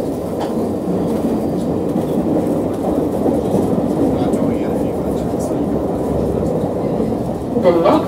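London Underground Circle Line train running through a tunnel, heard from inside the carriage: a steady rumble of wheels and running gear with a few faint clicks. The recorded next-station announcement begins right at the end.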